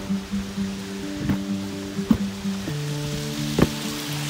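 Background music: held chords that change every second or so, with a few sharp percussive hits, the loudest about two seconds in and near the end.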